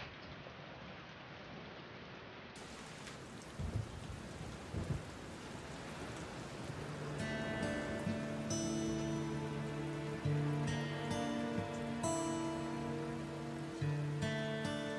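Steady rain falling, with two brief low rumbles of thunder about four and five seconds in. Soft music with sustained notes comes in about halfway through and grows louder over the rain.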